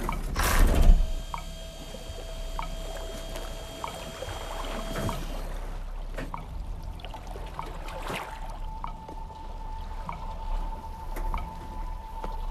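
Water sloshing and lapping in small waves, with a brief loud rush in the first second. Under it runs a sparse film score: a faint held note and a regular tick about every second and a quarter.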